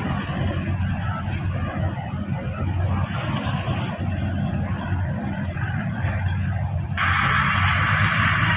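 Steady low engine rumble from harbour boats under a rough wash of wind and water noise. About seven seconds in, a louder hiss comes in abruptly.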